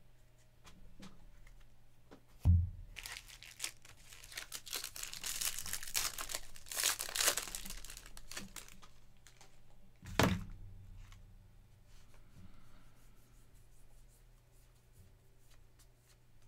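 A 2024 Bowman Baseball jumbo foil pack being torn open, its wrapper tearing and crinkling for about five seconds. It comes between two thumps, one a couple of seconds in and one about ten seconds in.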